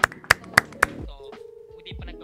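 Hands clapping close to a microphone, about four claps a second, stopping about a second in.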